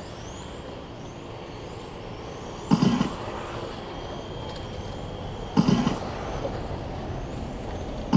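Electric RC touring cars racing in the distance: faint rising whines of their motors over a steady low generator hum, with two short louder noises about three and six seconds in.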